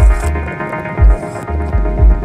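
DJ set music: a deep kick drum about once a second, with bass notes between the hits, under sustained chords.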